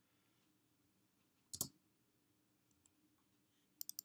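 Computer mouse clicking over near silence: a single click about a third of the way in, then a quick pair of clicks near the end.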